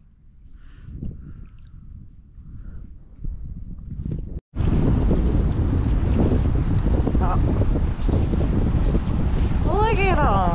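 Wind buffeting the microphone as a low rumbling noise, faint at first, then loud and steady after an abrupt cut about four and a half seconds in.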